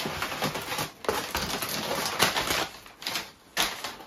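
Cardboard shipping box being opened by hand: the flaps scrape and rustle in a run of uneven scratchy sounds that ease off briefly near the end.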